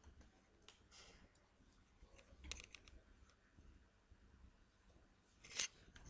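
Near silence with a few faint, short clicks of computer input, like mouse buttons and keys, the loudest about half a second before the end.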